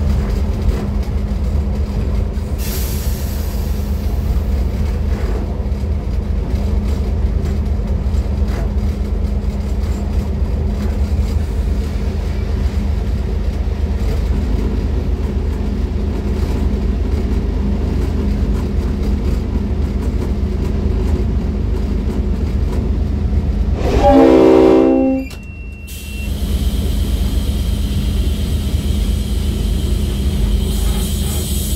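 N class diesel locomotive running along the line with a steady low drone. About three-quarters of the way through, its horn sounds once for about a second and a half, the loudest sound here.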